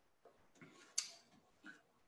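Quiet room with one sharp, light click about a second in and a few fainter soft sounds around it.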